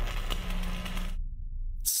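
Trailer sound effect: a loud hissing rush over a deep low rumble, cutting off a little over a second in, with the rumble carrying on alone until a sharp click at the end.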